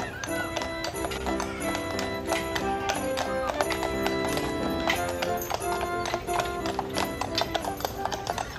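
Hooves of a pair of carriage horses clip-clopping on asphalt as they pull a carriage past, with Christmas music playing over them.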